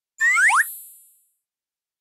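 Cartoon jump sound effect: a quick rising pitch glide with a bright chime-like ring that fades out within about a second, marking the characters bouncing high off a trampoline.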